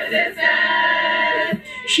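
A group of women's voices singing or chanting one held note together, ending about a second and a half in.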